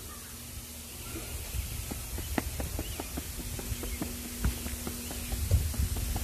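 Footsteps on a concrete sidewalk, a scatter of short soft ticks about two a second, over a low rumble of wind and handling on a phone microphone, with a faint steady hum beneath.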